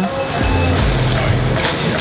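Background music carried by deep bass notes that change every half second or so.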